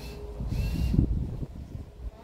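Low, uneven rumble of wind and handling noise on a handheld microphone outdoors, loudest about a second in. A faint short high chirp sounds about half a second in.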